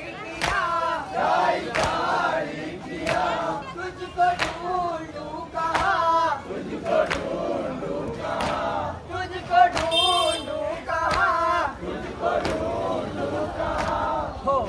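A crowd of men chanting a mourning lament (nauha) together, with rhythmic chest-beating (matam): the hand slaps on the chest land in unison about every three-quarters of a second.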